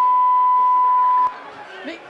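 A steady single-pitch censor bleep that masks a spoken word, then cuts off sharply about a second and a quarter in.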